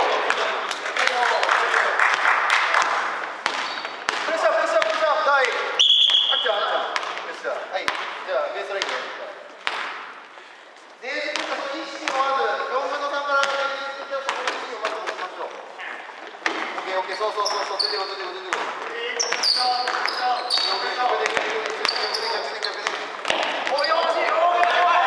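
A basketball bouncing on a wooden gym floor during a game, with repeated sharp bounces, under players' voices calling out through most of it.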